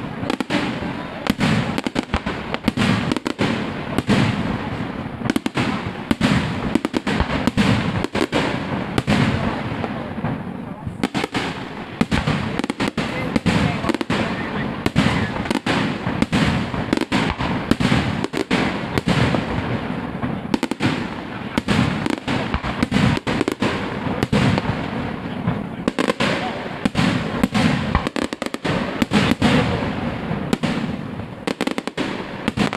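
A fireworks display going off in a dense, continuous barrage: many sharp bangs a second, one on top of the next.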